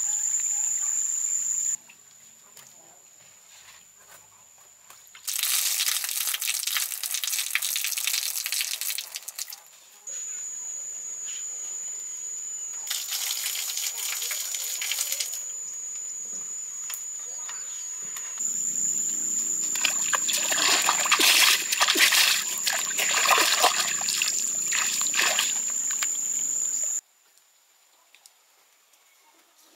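Outdoor work sounds in several short takes: water splashing, and a stiff broom sweeping a packed-earth floor in noisy strokes, over a steady high-pitched whine. Near the end comes a longer, louder stretch of rapid scraping and splashing.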